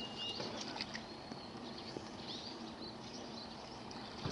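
Faint outdoor ambience with small birds chirping in the background: short, scattered high chirps and a brief thin whistled note.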